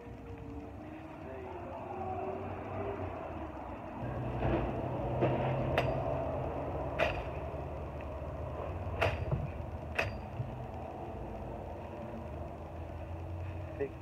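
Gerber Gator kukri machete chopping into shrub branches: about six sharp strikes between roughly four and ten seconds in, over a steady low rumble.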